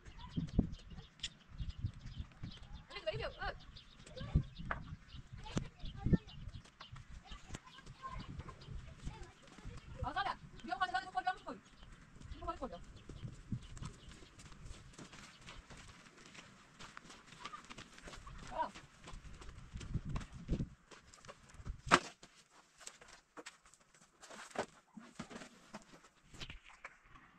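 Outdoor farmyard sounds: scattered knocks and footsteps over low rumbles, with one long wavering animal call about ten seconds in and a sharp knock near the end.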